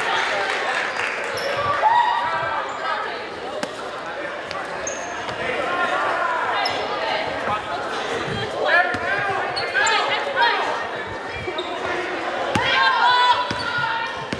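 Basketball bouncing on a hardwood gym floor during a game, among scattered voices and shouts that echo through the large gym.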